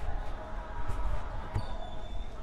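Busy street ambience of passing traffic, with uneven low thuds from a camera carried by someone walking.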